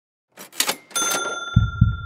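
A short swishing burst, then a bell-like ding that rings on, with low double thumps like a heartbeat starting about one and a half seconds in.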